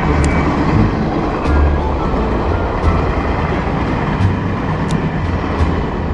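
Wind buffeting the microphone: a steady rush broken by uneven gusts of low rumble, with a few faint clicks.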